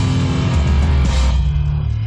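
Live hardcore punk band playing loud distorted electric guitar, bass and drums. A little past the middle, the cymbals and high end drop away and low chords ring on.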